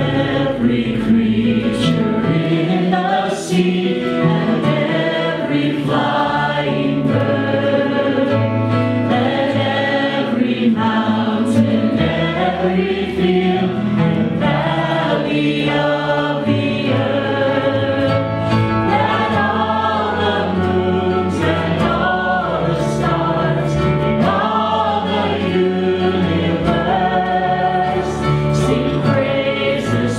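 Live worship band playing a gospel song: voices singing over acoustic guitars, violin and a steady bass line.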